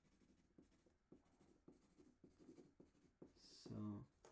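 Faint pencil scratching on paper: a run of short, irregular strokes as letters are sketched.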